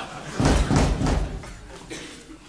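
A door banging: a burst of heavy thumps lasting about a second, as someone arrives at it.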